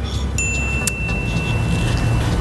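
Subscribe-button sound effect: a bright chime that rings steadily for almost two seconds, with a single mouse click about a second in, over a steady outdoor background rumble.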